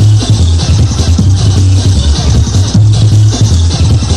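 Loud electronic dance music from an early-1990s rave DJ set: a heavy bass line under fast, busy drums and hi-hats.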